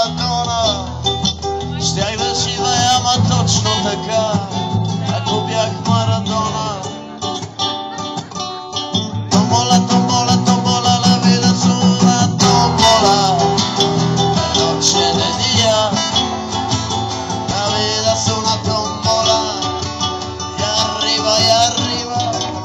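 Three acoustic guitars played live together, strumming an instrumental passage of a Latin-style song, getting fuller and louder about nine seconds in.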